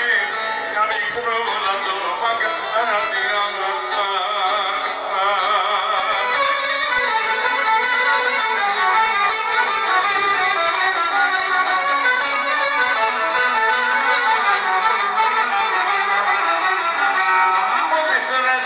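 Greek folk band playing live: clarinet and violin carry a wavering, ornamented melody at a steady level.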